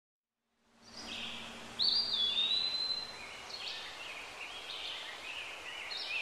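Birds chirping, starting about a second in, with one clear whistled call near the two-second mark that rises, dips and then holds.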